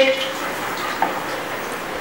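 Steady background hiss of an indoor room, with one faint click about a second in; the tail of a spoken command is heard at the very start.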